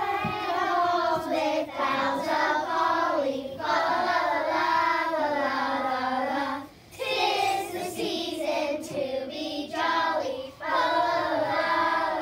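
A group of young children singing together, several sung phrases with brief breaks between them.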